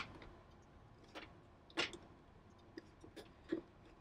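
A few faint metal clicks and taps from the Dell PowerEdge R620's side pins dropping into the notches of its sliding rails' inner members as the server is lowered in. The loudest comes a little before halfway.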